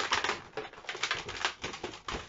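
Latex modelling balloons being handled and twisted, rubbing against each other and the hands: a rapid, irregular crackle of small clicks and squeaks.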